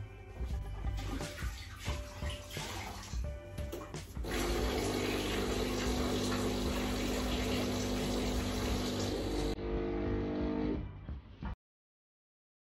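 Background music, joined about four seconds in by a loud, steady rush of running water that holds until the sound cuts off abruptly to silence near the end.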